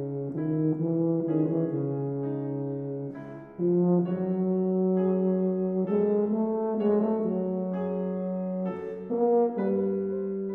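Tuba playing a slow melody of long held notes, with a brief break about three and a half seconds in before a louder, higher note.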